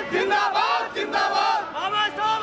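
A group of men shouting political slogans together, loud chanted voices rising and falling in short phrases.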